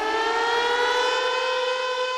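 A siren-like electronic sound effect: a single tone with many overtones glides up in pitch over about a second and a half, then holds steady.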